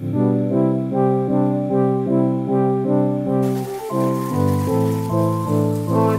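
Background instrumental music with a steady pulsing rhythm of sustained chords.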